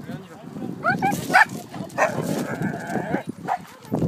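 Dogs in a pack barking and calling, with short rising yelps about a second in and a longer held cry from about two to three seconds in.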